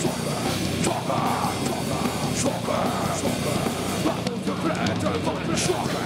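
A nu-metal band playing live, with distorted electric guitars, bass and drums and a vocalist delivering lines into the microphone.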